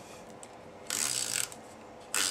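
SNAIL adhesive tape runner rolled along the back of a strip of cardstock, laying down adhesive, in one short burst about half a second long, about a second in.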